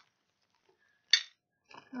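A single sharp clink about a second in: small hard trinkets knocking together as they are handled.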